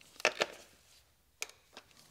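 A few light metal clicks and taps as coil pack bolts are refitted with a hand nut driver: a short cluster of taps about a quarter second in, then one sharp click at about a second and a half.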